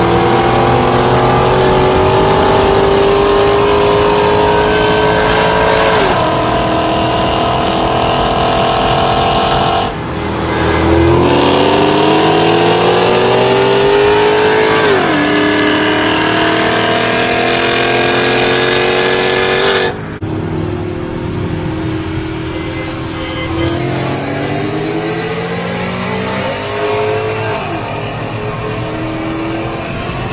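Two V8 cars, a Ford Mustang GT 5.0 and a Mercedes E55 AMG, racing at full throttle: the engine note climbs steadily in pitch through each gear and drops sharply at each upshift. The sound breaks off abruptly twice, about a third and two-thirds of the way in, and picks up again partway through another pull; the last stretch is quieter.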